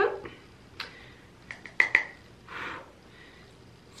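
A few light, sharp clicks as a makeup brush is tapped against a pressed blush compact, the loudest a little under two seconds in, followed by a brief soft brushing swish.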